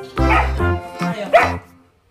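Background music with a steady bass line, over which a dog barks twice, once near the start and once just past the middle. The music drops out near the end.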